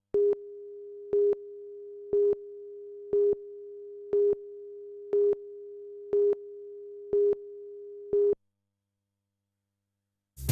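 Television countdown leader tone: a steady pure tone with a louder beep once a second, nine beeps in all, marking the count from nine down before the programme resumes. The tone cuts off suddenly about eight seconds in.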